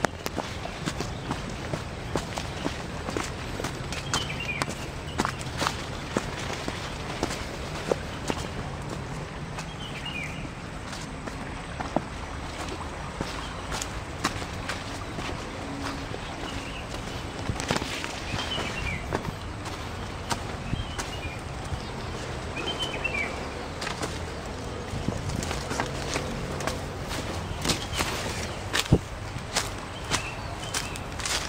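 Footsteps of a person walking along a dirt path through dense undergrowth, with frequent short crackles and brushes as feet and body push through leaves and stems.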